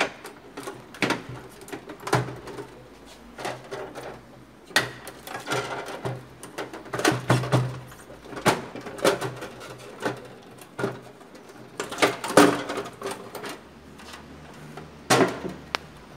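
Plastic cover of an Epson L120 inkjet printer being pulled off its snap-fit clips: irregular clicks, knocks and rattles of plastic as it is worked free, the loudest a little past halfway and near the end.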